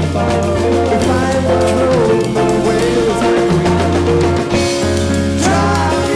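Rock band recording of an instrumental passage, a sustained lead line bending in pitch over a steady bass, with a drum kit played along in a busy, syncopated polyrhythmic pattern across snare, hi-hat and ride cymbal.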